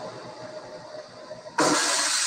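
An 18650 lithium-ion cell in thermal runaway venting through an aluminium battery-pack enclosure. After faint steady background noise, a sudden loud hiss of escaping gas and sparks starts about one and a half seconds in.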